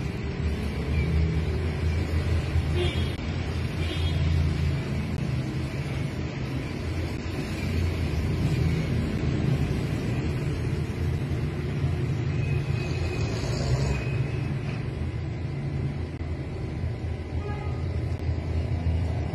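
A steady low rumble of background noise whose level wavers, with no sharp sounds.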